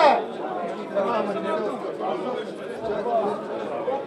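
Chatter of several people talking, the voices of spectators in the stands around the microphone.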